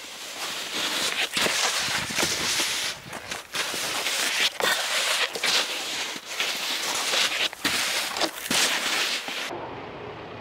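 Snowboard sliding and scraping over packed snow: a rough hiss broken by repeated sharp edge scrapes, stopping abruptly near the end.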